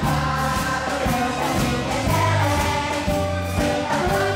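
Children's choir singing to a musical accompaniment with a steady bass line and a regular beat.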